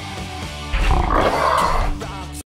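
A loud animal roar sound effect, starting about three-quarters of a second in and lasting about a second, over rock outro music.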